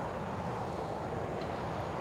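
Steady, low outdoor background rumble with no distinct events.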